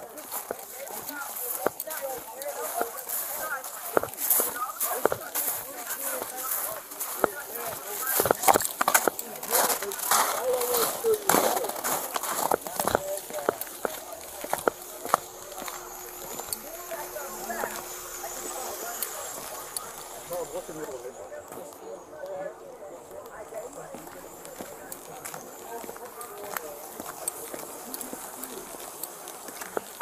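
Footsteps crunching through snow, with rustling of the body-worn camera against clothing and indistinct voices. The crunching knocks are dense in the first half and thin out about halfway through.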